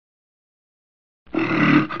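Silence, then a bit over a second in a loud roar sound effect starts abruptly, with a brief break just before the end.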